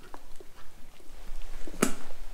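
Horse biting and crunching a raw carrot held out by hand, with small crunching clicks and one loud, sharp snap near the end as a piece breaks off.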